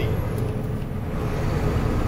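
Steady low rumble of a motor vehicle heard from inside its cab.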